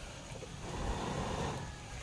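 A soft rushing whoosh of air blown onto a small fire of coconut husk fibre and sticks to liven its embers, swelling about half a second in and fading near the end.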